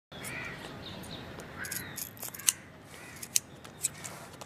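Scissors snipping through hair, a few sharp snips in the second half, while a bird calls about three times in the background.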